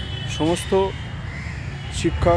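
A crow cawing twice in quick succession, about a third of a second apart, over a steady low background hum.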